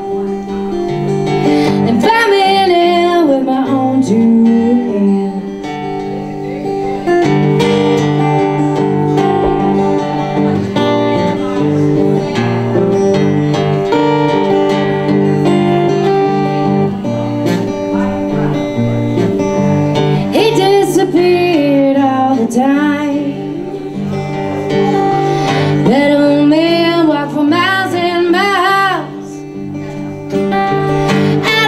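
A woman singing a folk song to her own steel-string acoustic guitar. The guitar plays chords throughout, and her voice comes in sung phrases over it.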